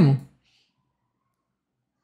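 A man's speaking voice trailing off in the first moment, then near silence for the rest.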